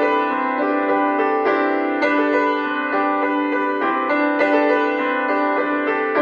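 Feurich grand piano played four hands by two pianists: a continuous stream of struck notes over a sustained note in the lower middle range.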